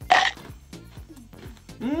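A man chewing a mouthful of crunchy, dry, seasoned ramen-noodle snack, giving many small crunches. It opens with a short muffled vocal sound through his hand, and near the end he gives an appreciative "hmm" while still chewing.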